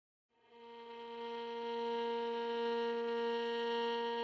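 A single sustained drone note with a buzzy, overtone-rich tone, fading in over the first two seconds and then holding steady at one pitch, as the opening of a piece of music.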